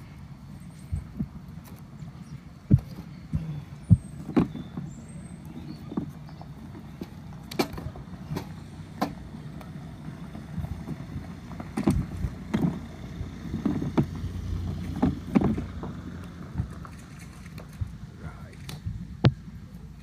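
Compressed wood fire-log blocks knocked against each other and dropped onto a burning fire in a metal brazier: a string of sharp irregular knocks over a low steady rumble.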